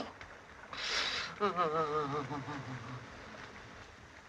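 A man's voice: a sharp, breathy sound about a second in, then a short, wavering moan that falls in pitch and fades.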